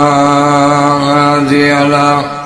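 A man's voice chanting Arabic, holding one long melodic note at a steady pitch, with a slight dip in pitch about one and a half seconds in.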